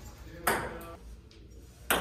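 Table tennis ball hit off a paddle and bouncing on the table: a few sharp clicks about half a second apart, the first about half a second in and the loudest near the end.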